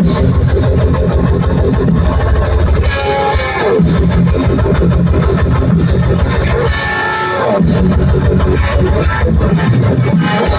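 Live rock band playing loud through an outdoor stage PA: electric guitar over fast, driving drums. The drums drop out briefly twice, about three and seven seconds in, leaving ringing guitar notes.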